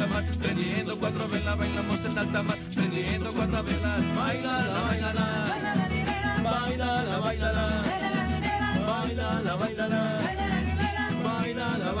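Live cumbia played on acoustic guitars, upright bass and hand percussion with a steady shaker rhythm, with voices singing along.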